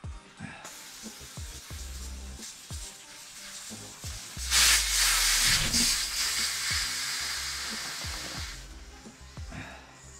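Air hissing out of a bicycle tyre through its loosened valve as the tyre is let down. The hiss is faint at first, turns loud about four and a half seconds in, then fades away over the next few seconds.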